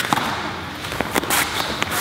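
Several sharp slaps and thuds from karate front-kick sparring: bare feet landing on foam mats and strikes making contact, spread across about two seconds.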